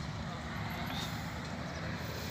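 Steady outdoor rumble with the indistinct voices of a crowd of people in the distance.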